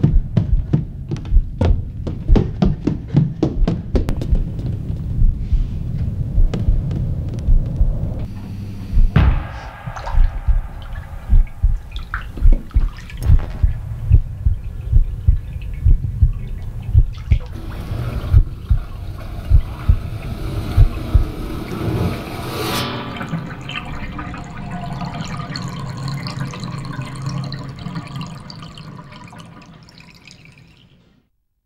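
Film soundtrack built on a deep, slow heartbeat-like pulse of about three beats every two seconds, joined from about nine seconds in by the sound of water. Near the end the pulse stops, the sound turns dull and fades out.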